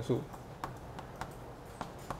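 Chalk writing on a blackboard: a string of short, sharp taps, about six of them, as a character is written.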